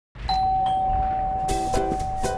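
A doorbell sounding two chimes in quick succession, the tone ringing on afterwards. Plucked-string music, like a ukulele, comes in about one and a half seconds in.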